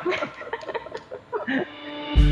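Brief chuckling laughter broken up with a few murmured words.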